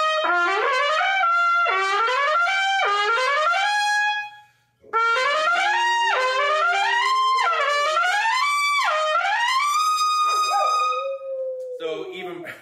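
Lotus Universal Bb trumpet, with its yellow brass bell stem, phosphor bronze flare and a yellow brass tuning slide fitted, played in quick rising scale-like runs that drop back and climb again. It has a bright tone. There is a short breath gap about four and a half seconds in, and near the end the last note falls away.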